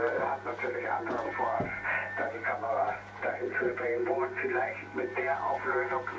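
Speech over an amateur radio receiver's loudspeaker throughout, narrow and tinny in tone, with a steady low hum underneath.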